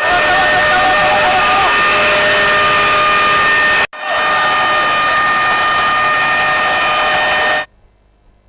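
Field sound of a large fire burning through wooden and tin-roofed structures: a loud, dense noise with a steady high whistling tone over it. It breaks off for an instant near the middle and stops shortly before the end.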